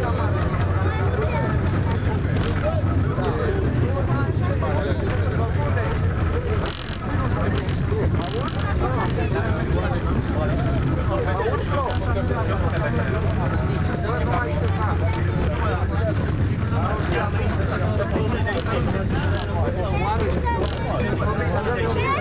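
Several people talking at once in a gondola cabin, an indistinct babble of conversation over a steady low hum.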